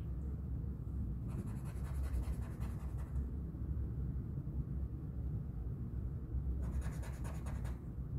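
Black felt-tip marker scribbling on paper to black out words: two spells of quick back-and-forth scratching, a longer one about a second in and a shorter one near the end.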